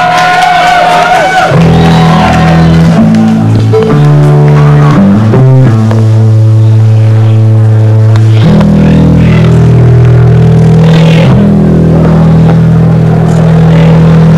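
Punk band playing live and loud: distorted guitar and bass holding long, heavy chords that shift in pitch every one to three seconds, with little drumming.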